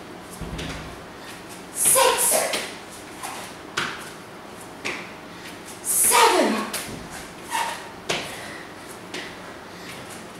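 A woman's short, breathy vocal exhales, each falling in pitch, about every four seconds as she does burpees. Soft taps and a low thud of hands and feet landing on the exercise mat come between them.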